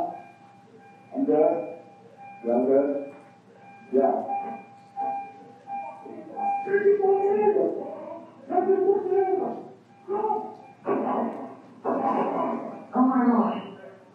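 Recorded roadside-assistance phone call played back over courtroom speakers: muffled, phone-quality voices in short phrases over a faint steady tone, loudest and roughest near the end.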